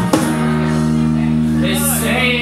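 Live band music: a last cajon hit just after the start, then a held chord on electric guitar and bass left ringing. A man's voice comes in near the end.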